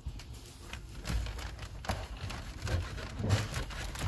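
Range Rover Sport center console trim panel being pulled up by hand: a run of irregular clicks, creaks and light knocks of plastic trim, with a few louder knocks.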